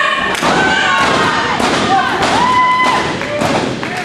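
Repeated thuds of bodies and feet on a wrestling ring mat, mixed with shouting voices from around the ring.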